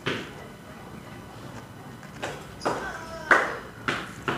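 Dry roots and loose potting medium rustling and crackling as an aglaonema root clump is picked apart by hand with a small knife, in several short bursts.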